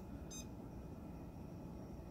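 A single short, faint, high-pitched electronic beep about a third of a second in, over a low steady hum, while a channel button on a remote is being pressed.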